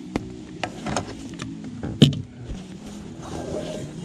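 Cooking gear being handled and pulled from a fabric bag: rustling with scattered light clicks and knocks, and one sharp knock about two seconds in.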